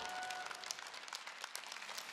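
Audience applauding, a spread of many hand claps at a fairly low level, while the last held note of the music fades out about half a second in.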